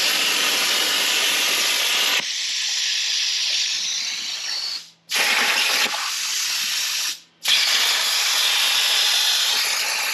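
CNC plasma cutter cutting steel plate: the loud, steady hiss of the plasma arc. It cuts off suddenly twice, about five seconds in and again a little past seven seconds, each time restarting within half a second.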